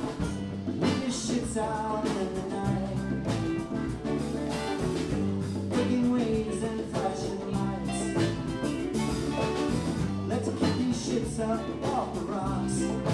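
Live band playing a song: electric guitars, keyboard and hand drums with a steady beat, and a lead vocal.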